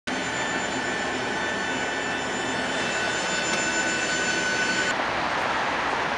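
Jet aircraft noise: a steady rush with several high, steady whining tones. About five seconds in, the whine cuts off abruptly and the steady noise of city street traffic takes over.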